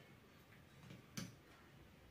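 Near silence broken by a few faint ticks and one sharper click just past a second in: small parts being handled inside an opened electric drill's housing.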